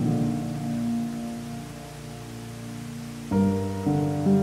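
Solo piano playing slow, soft chords that ring and fade, with a new chord struck about three seconds in, over a steady wash of falling water.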